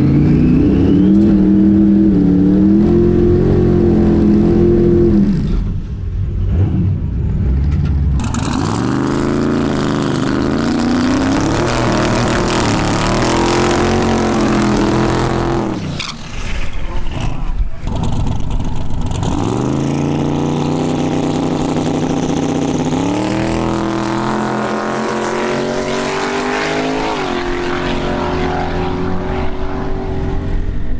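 Twin-turbo LS V8 Camaro drag car: the engine runs steadily, heard from inside the cabin, then about eight seconds in it does a burnout, rear tyres spinning in a loud hiss under a revving engine. In the last third the engine note climbs in pitch in stages as the car launches and runs down the strip.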